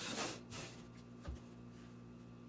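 A clear plastic set square sliding and being repositioned on brown pattern paper: a short scraping rustle at the start, a briefer one just after, and a light tap a little past the middle.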